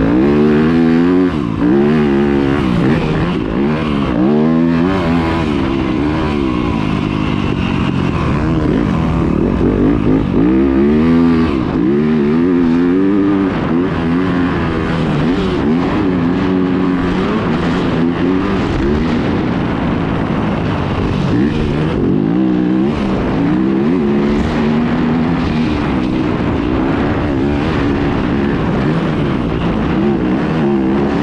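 A 2020 Yamaha YZ250FX dirt bike's 250 cc four-stroke single-cylinder engine under riding load, revving up and falling back over and over as the rider works the throttle.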